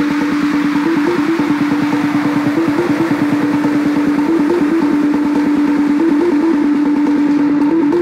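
Techno from a DJ mix: a fast, driving beat under a repeating low synth note that briefly jumps up in pitch every second or so, with a high hiss that thins out near the end.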